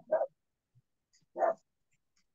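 Two short animal calls about a second and a half apart, heard through a video call's gated audio.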